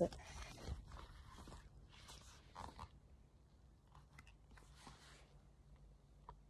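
Faint crackling and rustling handling noise close to the microphone, strongest in the first few seconds and then fading. Any sound from the headphones themselves is not clearly heard.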